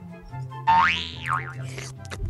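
A cartoon boing sound effect over light background music: a loud pitched glide that swoops up and back down about two-thirds of a second in, then dips once more.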